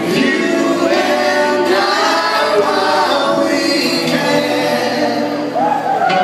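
Live acoustic music: several voices singing together in long, wavering held notes over acoustic guitars.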